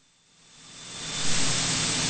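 In-flight cockpit noise of a single-engine Piper PA46 Malibu Mirage, heard as a steady hiss. It fades in after about half a second of dead silence, with a faint high tone running through it.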